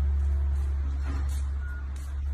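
Classic Chevrolet Impala's engine idling, a loud, steady low rumble.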